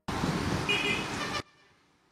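Outdoor road traffic noise with a short vehicle horn toot about three quarters of a second in, cutting off suddenly after about one and a half seconds.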